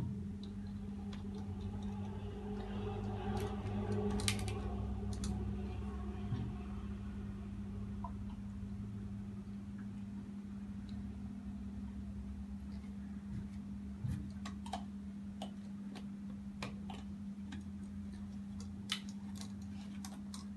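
Water poured into a plastic bottle for a few seconds near the start, over a steady low hum. Later, a few light clicks and taps as the plastic bottle and its cap are handled.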